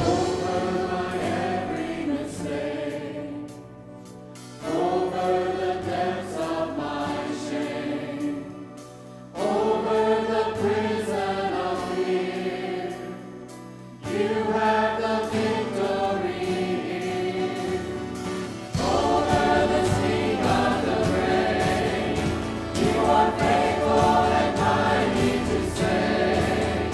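Worship team and choir singing a praise song with band accompaniment, phrase by phrase with short dips between lines. About two-thirds of the way through the music fills out with more bass and grows louder.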